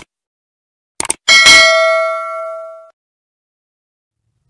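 Subscribe-button animation sound effect: a mouse click, then two quick clicks about a second in, followed by a bright notification-bell ding that rings out and fades over about a second and a half.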